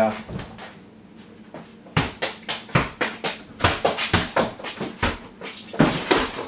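A quick, irregular run of knocks and clatters starting about two seconds in, with hurried footsteps on a hard floor among them.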